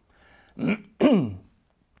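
A man clearing his throat in two short pushes, about half a second and a second in, the second with a falling pitch.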